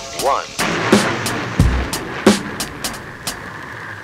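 A rocket-launch sound effect: a steady rush of noise sets in just after the countdown's last word, running over a beat of sharp drum and cymbal hits.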